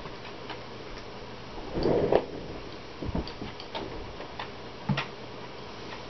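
Beer poured from a glass bottle into a stemmed glass goblet, with a denser splash about two seconds in. Then a few scattered light clicks and a sharper knock near the end as the glass and bottle are handled and set down on the table.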